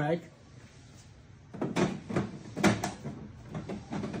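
Plastic maintenance tank of an Epson SureColor printer being pushed back into its slot: after a quiet second and a half, a run of knocks, clicks and scrapes as it goes in and seats.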